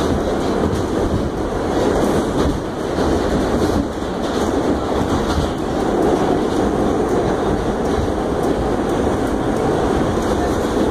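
R68 subway car running at speed through a tunnel, heard from inside the car: a steady loud rumble with faint clicking from the wheels over the rails.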